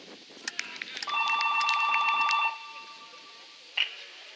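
A referee's pea whistle blown once, a single trilling blast of about a second and a half starting about a second in, signalling the penalty goal. A few faint knocks come just before it.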